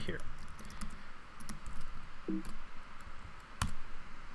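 Computer keyboard typing: scattered light key clicks, with one louder keystroke near the end as the command is entered to run.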